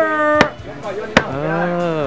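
A wooden block rapped on a wooden popsicle vendor's box: two sharp knocks about a second apart, part of a steady series of clacks, under a man's drawn-out speech.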